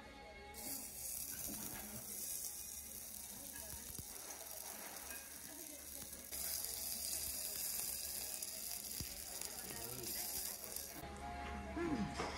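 A piece of hamburg steak sizzling on a small hot iron plate, reheated because it had gone cold. The sizzle starts about half a second in, gets louder around halfway, and stops shortly before the end.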